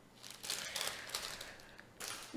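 Clear plastic packaging bag crinkling as it is handled and laid down, a run of quick faint rustles lasting about a second and a half.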